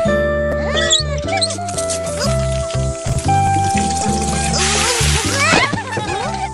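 Background music with a steady bass line. About four and a half seconds in, a short rush of water, under a second long, from a garden tap running through a hose.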